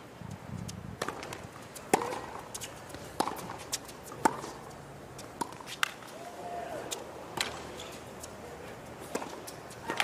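Tennis rally on a hard court: racket strings striking the ball, a sharp pop about once a second, with a hushed stadium between shots.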